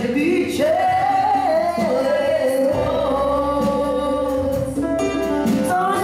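A live worship band plays and sings a Polish worship song: sung voices holding long notes over keyboard, guitar and drums.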